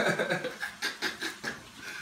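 A man laughing hard, a quick run of short breathy bursts of about four a second that trails off near the end.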